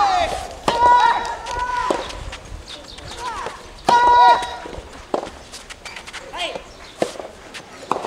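Soft tennis rally: short sharp pops of rackets hitting the rubber ball, with two loud shouted calls, about a second in and again around four seconds.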